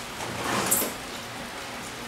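Oil and browned chicken bits sizzling in a hot, empty frying pan: a steady hiss, with a brief louder swell about half a second in.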